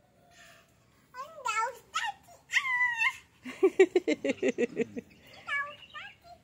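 A cat meowing repeatedly: several short rising-and-falling meows in the first few seconds, then a fast stuttering run of calls.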